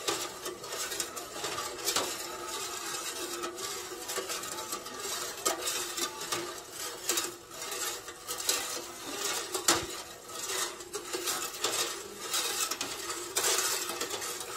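Metal ladle stirring sugar into hot coconut water in an aluminium stockpot, repeatedly clinking and scraping against the pot's sides and bottom in an irregular rhythm as the sugar dissolves.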